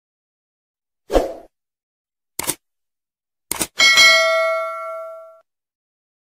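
Subscribe-button sound effect: a short thump about a second in, two sharp clicks, then a bell ding that rings out for about a second and a half.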